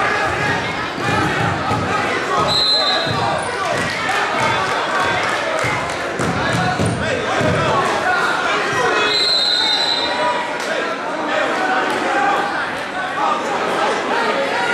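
Echoing gym noise during a wrestling bout: repeated thuds of feet and bodies on the wrestling mat under indistinct shouting and chatter from coaches and spectators. Two brief high-pitched squeaks, a few seconds in and again around nine seconds.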